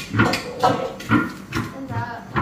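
Voices talking in short, quick phrases, with a sharp knock right at the start.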